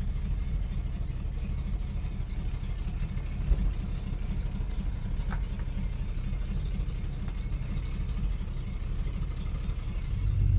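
Ford Torino's engine idling with a steady low rumble as the car backs slowly out of the shop bay.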